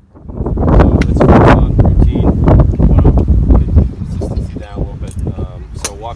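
Wind buffeting the microphone in loud, gusty bursts that start suddenly just after the opening. Muffled voices come through under the wind in the second half.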